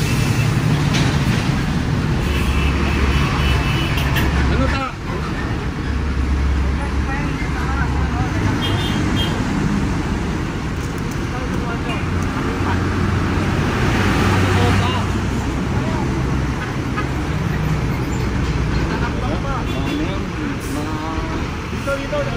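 Steady low drone of street traffic and a nearby vehicle engine, with indistinct voices of people talking.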